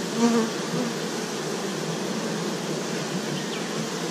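Steady buzzing of a mass of honeybees crowding the hive entrance.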